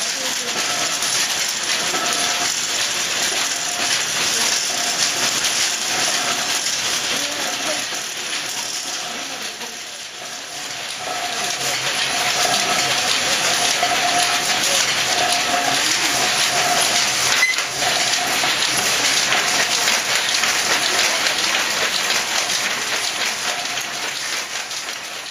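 Toyoda Y-type power looms weaving, a dense continuous mechanical clatter of several looms running at once. It dips briefly near the middle, then grows louder as one loom is heard up close.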